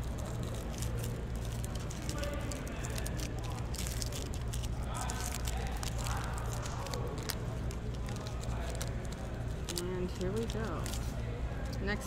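Foil wrapper of a Panini Select baseball card pack being peeled and torn open by hand: irregular crinkling and crackling of the foil throughout. A steady low hum and faint voices sit underneath.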